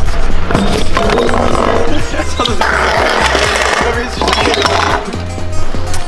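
Kick scooter clattering on stone paving, with sharp knocks near the start and wheels rolling: the scooter hits the ground after a failed full whip. Background music with a steady beat runs underneath.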